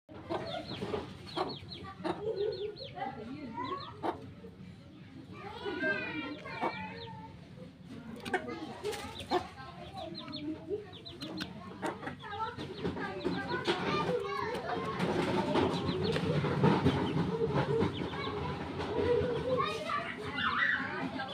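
Chickens clucking, with people's voices in the background that grow louder and busier in the second half.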